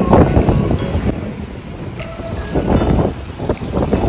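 Street noise at a roadside: a vehicle rumbling, with brief snatches of voices.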